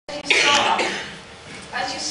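A loud cough about a third of a second in, followed near the end by a woman's voice starting to speak.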